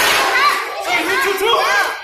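Crowd of spectators, children among them, shouting and chattering over each other in a large hall.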